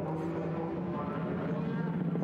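Formula 3 race car's Mercedes four-cylinder engine running at high revs as the car passes through a corner, a steady engine note.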